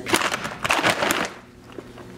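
Plastic dog-food bag crinkling as it is handled and turned over, a dense crackle that dies down a little past halfway, leaving a few faint clicks.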